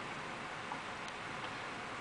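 Steady background hiss with a few faint, scattered ticks.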